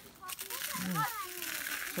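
Dry leaf litter and brush rustling and crackling as someone walks through it, a soft continuous hiss, with a brief faint voice about a second in.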